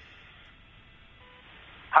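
Faint steady hiss of an open phone line played over the studio speaker while an unanswered call waits to connect, with a short faint beep just past halfway; a voicemail greeting starts at the very end.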